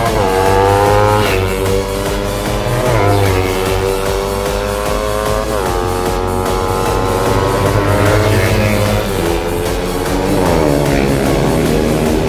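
Several motorcycles racing toward the camera at speed, their engines revving with the pitch jumping up and sinking slowly several times, mixed with loud background rock music.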